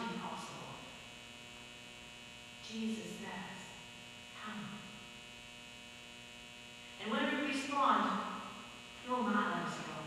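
Steady electrical mains hum with a buzz of many even overtones. An indistinct voice comes in briefly about three seconds in and again, louder, from about seven seconds in.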